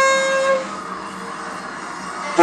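An alto saxophone holds one steady note, which ends about half a second in.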